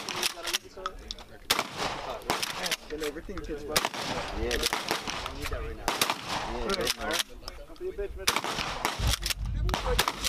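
Gunshots from several firearms on an outdoor range, including a pump-action shotgun, going off at irregular intervals throughout, some in quick pairs or clusters.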